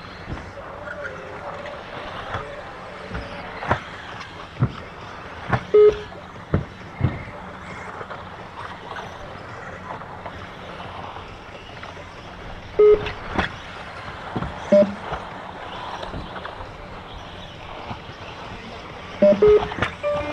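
Radio-control buggies racing on a turf track: a steady run of motor and tyre noise broken by sharp knocks from landings and hits. Short electronic beeps sound three times.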